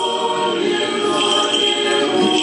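Orthodox church choir singing a cappella in held, sustained chords.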